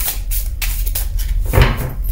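A deck of tarot cards being shuffled by hand: a run of short crisp card flicks and slides, then a louder knock near the end as the deck is gathered and squared.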